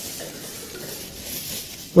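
Aluminium foil crinkling and rustling as a foil-wrapped bundle is handled and passed from hand to hand.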